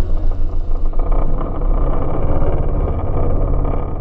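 Jet ski engine running under way, a low-heavy rumble with irregular rises and falls in level; it fades out at the very end.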